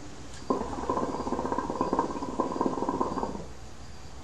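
Hookah water base bubbling as smoke is drawn through the hose: a rapid, steady gurgle that starts suddenly about half a second in and stops a little over three seconds in.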